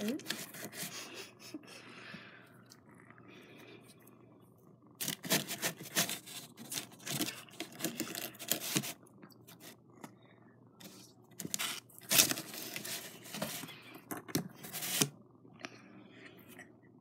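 Rustling and scratchy scraping against cardboard and fabric in a blanket-lined cardboard box, in two bursts of a few seconds each, the first about five seconds in and the second about eleven seconds in.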